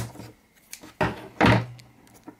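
Handling knocks on a small tin can: a sharp click at the start, then a louder thump about a second in that fades away.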